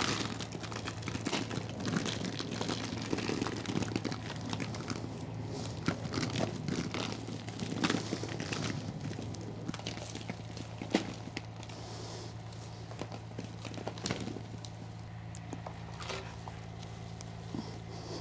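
Hands teasing apart the root ball of a potted wisteria: irregular crackling and crumbling of roots and potting soil, over a steady low hum.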